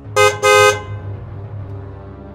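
Car horn sounding twice early on: a short toot, then a slightly longer one. Background music runs underneath.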